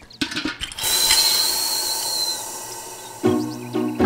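Old brass wall tap being worked with a short clicking, rattling squeak, then a steady hiss from the tap with a thin high whistle. Music comes in near the end.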